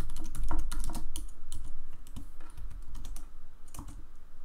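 Computer keyboard typing: a quick run of keystrokes over the first second and a half or so, then a few scattered key presses.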